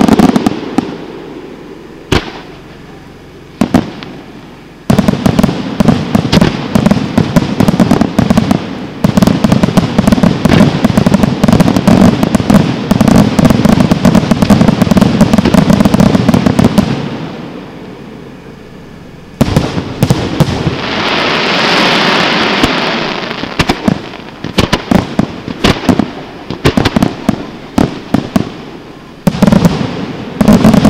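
Aerial firework shells bursting and crackling in a rapid barrage, with a dense run of heavy bangs through the middle. A hissing stretch follows, then more sharp reports near the end.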